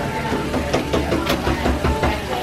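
Water spraying from a salon shampoo-bowl hand sprayer onto foil-wrapped hair, with background music playing over it.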